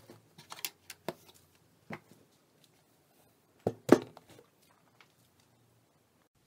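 Scattered light clicks and knocks of things being handled, with two louder knocks close together about four seconds in.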